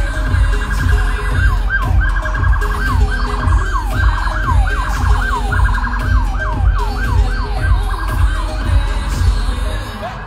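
Police car siren sounding loudly, switching back and forth between a rapid warble and quick falling whoops, several a second. Music with a heavy bass beat, about two beats a second, plays underneath.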